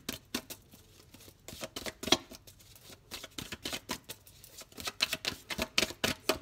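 A deck of tarot cards being shuffled by hand, cards passed from one hand into the other, giving an irregular run of crisp card clicks and flicks a few times a second, the sharpest about two seconds in.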